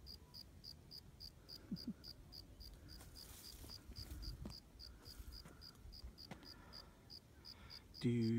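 A cricket chirping faintly and steadily, one high note repeated about four times a second.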